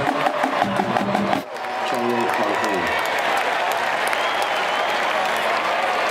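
Marching band playing a rhythmic drum-led passage that cuts off abruptly about a second and a half in, giving way to the steady murmur of a stadium crowd with nearby voices.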